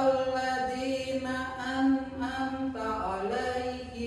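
A voice chanting an Islamic prayer (doa) in Arabic to a slow melody, each syllable held on a steady note and stepping up and down in pitch.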